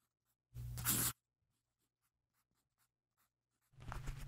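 A single marker stroke scratching across paper, lasting about half a second, shortly after the start. Music begins just before the end.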